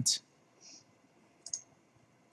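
A computer mouse button clicking once, sharply, about one and a half seconds in, with a fainter short tick before it.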